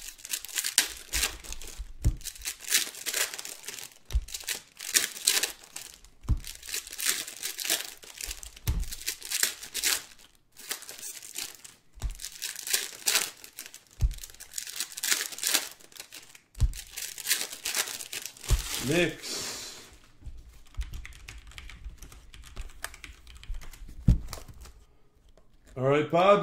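Plastic wrappers and shrink-wrap on trading card packs and boxes crinkling and tearing as they are handled, in irregular bursts, with dull low thumps every couple of seconds.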